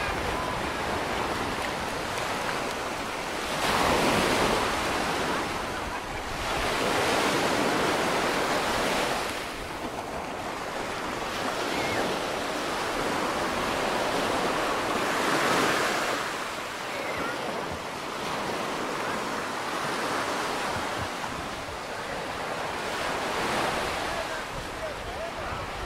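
Small surf breaking and washing up on a sandy beach, swelling louder with each wave several times. Wind rumbles on the microphone.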